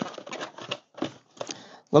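Cardboard box being opened and handled by hand: a quick irregular run of light taps, scrapes and rustles as the flaps and contents are moved.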